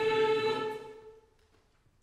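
Mixed chamber choir singing a cappella, holding a chord that cuts off under a second in; the sound dies away in the hall's reverberation, leaving a hush.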